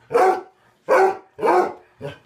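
A beagle-type hound barking three times, loud, with short pauses between the barks.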